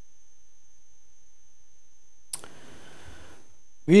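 A quiet pause in a lecture-room recording: faint room tone with a thin, steady high-pitched electronic whine, broken by a single sharp click about two seconds in, then a little room noise before the voice returns.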